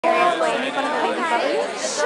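Chatter of several voices talking over one another.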